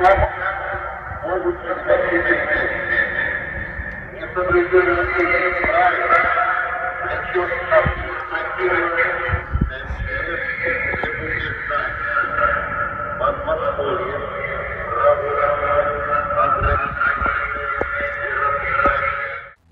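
An amplified voice broadcast over a street loudspeaker, tinny and smeared so that no words can be made out: one of the recurring announcements that the listener calls 'sound intimidation', repeating every couple of hours.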